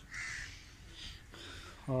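A bird calling in the background: a short call just after the start and fainter calls about a second in.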